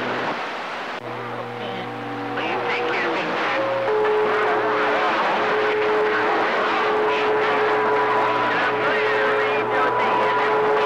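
CB radio receiving skip: steady static hiss with faint, garbled distant voices and steady heterodyne whistles from other stations' carriers. The whistles and a low hum come in about a second in, and a second, higher whistle joins partway through.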